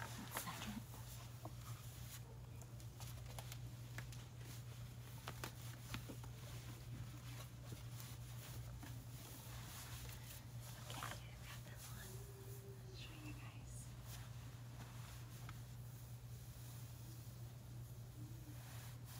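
Faint rustling and handling sounds of clothing and bedding as a person moves on and off a bed and adjusts pantyhose and a skirt, with scattered light clicks over a steady low hum.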